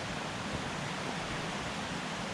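Steady, even rush of river water.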